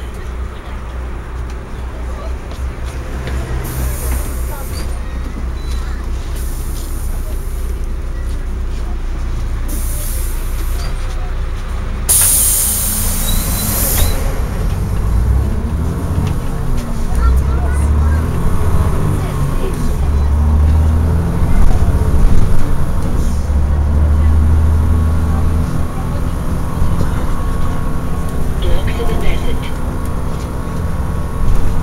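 Inside a city bus: the engine rumbles steadily, with a sharp burst of compressed-air hiss from the bus's air brakes or door pneumatics about twelve seconds in, lasting about two seconds. After it the engine grows louder and pulses, as if the bus is pulling away.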